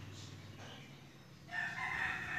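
A loud, drawn-out bird call begins suddenly about one and a half seconds in.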